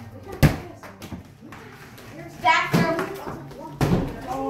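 Soccer ball hitting a hardwood floor: a sharp thud about half a second in, a lighter one soon after, and another sharp one just before the end.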